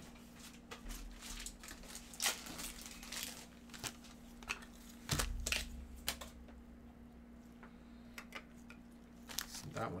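Plastic trading-card packaging being handled and torn open: a run of sharp crinkles and crackles over the first six or so seconds, with a low thump about five seconds in, then quieter handling.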